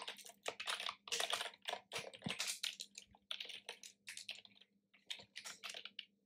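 Typing on a computer keyboard: a run of quick, irregular keystrokes with short pauses between bursts.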